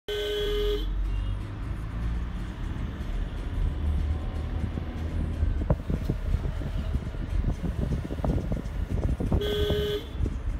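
Vehicle horn honking twice, once at the start and again near the end, a single steady pitched note each time, under a second long. Between the honks comes the steady rumble of a vehicle driving, with scattered knocks and rattles in the second half as it rides over a bumpy road.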